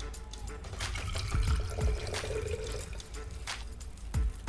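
Coconut water being drunk from a fresh coconut: irregular liquid sounds with a few soft knocks, over quiet background music.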